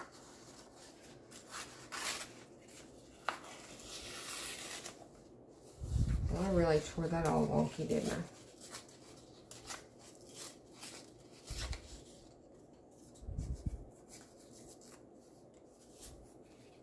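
Old book paper rustling as it is handled and folded by hand, with scattered light taps and clicks and a longer rustle about four seconds in.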